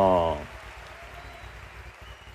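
A speaker's voice trails off on a drawn-out, falling syllable in the first half second. Then comes a pause holding only a faint, steady hiss.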